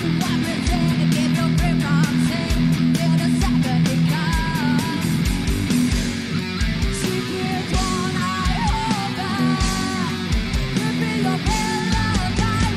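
Live heavy metal performance by a three-piece band: a distorted electric guitar and bass riff over drums with a steady kick-drum beat.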